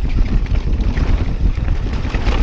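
Wind buffeting the microphone over the steady rumble of a mountain bike's tyres and frame riding fast down a dirt singletrack, with scattered small rattles.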